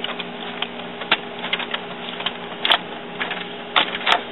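Epson WorkForce inkjet printer running its initial ink charge, a steady mechanical whir broken by a few sharp clicks. The printer is charging the printhead with ink while 'preparing the ink system'.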